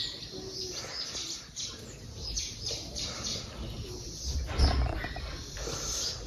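Small birds chirping in short, scattered calls, with a brief low rumble about four and a half seconds in.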